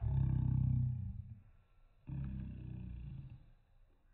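briidea power-return alarm sounding in two low buzzing blasts, each a little over a second long, about a second apart.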